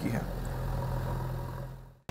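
Steady low engine hum with no other event, fading out near the end.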